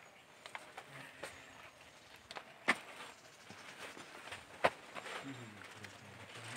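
Quiet outdoor background with scattered small clicks and two sharper knocks about two seconds apart, then faint voices near the end.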